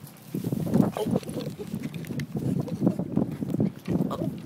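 A dog with its nose close to the microphone, sniffing and snuffling in quick, irregular puffs that start just after the beginning.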